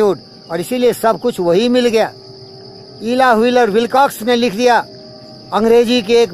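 A man's voice speaking in three bursts over a steady high-pitched insect drone. The drone carries on unbroken through the pauses.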